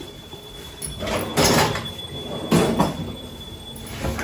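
Kitchen handling noises: an overhead cabinet door being opened and steel utensils being moved, in two scraping bursts about a second and two and a half seconds in.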